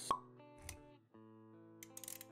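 Intro jingle for an animated logo: a sharp pop a moment after the start, a soft low thump just after half a second, then a short pause before held musical notes.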